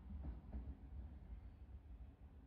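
Faint low rumble of background noise with a brief faint sound about half a second in; otherwise quiet.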